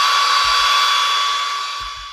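Hair dryer running, a steady whine over its rush of air, fading away near the end.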